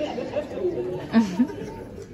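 Party guests chattering and laughing over one another in reaction to a joke.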